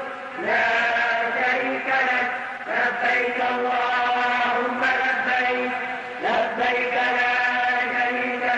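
A man's voice chanting in long, held melodic phrases, each starting with a rising slide: Islamic religious chanting.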